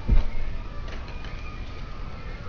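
A low thump just after the start, then faint handling noise as a plastic LEGO fire station model is swung open on a glass tabletop.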